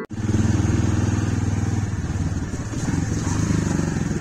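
Motorcycle engine running steadily while the bike is ridden, heard from the rider's seat.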